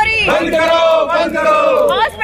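A woman shouting a protest slogan as one long drawn-out call that falls in pitch as it ends, with a crowd of protesters around her.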